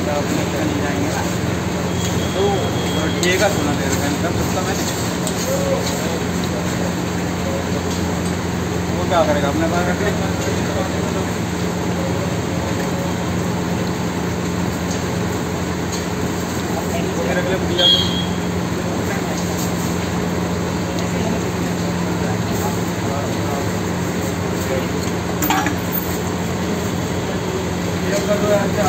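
Busy street-food stall ambience: indistinct voices over a steady hum and the frying hiss of an onion-tomato tadka on a large tawa griddle. A few sharp clinks of a metal spatula on the griddle come about 3, 9, 18 and 25 seconds in.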